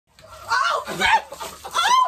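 A woman shrieking in three short, high-pitched bursts as foaming Coke is sprayed into her face.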